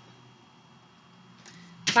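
A short pause: faint room tone with a thin steady high hum. Then a woman's voice starts again near the end.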